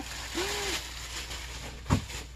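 A large clear plastic packaging bag crinkling and rustling as it is pulled about, with a short hum about half a second in and a single thump near the end.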